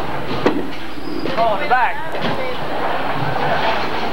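Bowling alley din: the steady rumble of bowling balls rolling down the lanes, with a sharp knock about half a second in.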